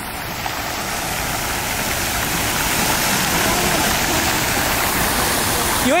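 Decorative fountain with several water jets arcing into a basin, splashing steadily, growing gradually louder.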